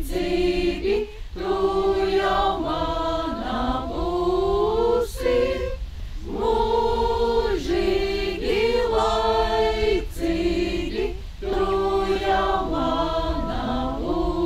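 Group of Suiti women singing a traditional song unaccompanied, in phrases of a few seconds with short breaths between. The melody moves over steadily held low notes, in the Suiti drone-singing manner. It is a song for mičošana, the putting of the married woman's headdress on a bride.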